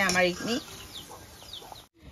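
Hot oil sizzling in a steel wok as dough biscuits deep-fry, with several faint, short, falling high chirps from a bird in the background. A woman's voice trails off at the start, and the sound cuts off abruptly near the end.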